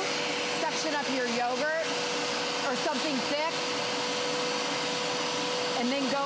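Hoover Power Scrub Elite carpet cleaner's motor running steadily with a constant whine, drawing water up through its hand tool as the tool is worked over a wet car mat.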